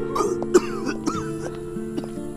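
A man coughing and retching in several short bursts, the sounds of someone being sick, over soft background music.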